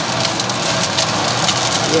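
Fried rice sizzling and crackling steadily in a hot wok, with a wooden spatula scraping chopped spring onion off a plate into it.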